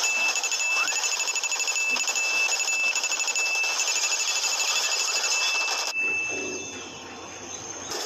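A steady high-pitched ringing tone, alarm-like, with a fast buzzing rattle above it, cutting off abruptly about six seconds in and leaving a quieter low hum.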